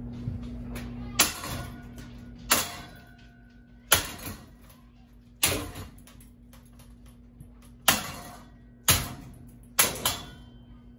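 A long metal rod striking the metal housing of a ceiling fan: seven hard, irregularly spaced clanging hits, each ringing out briefly. A steady low hum runs underneath.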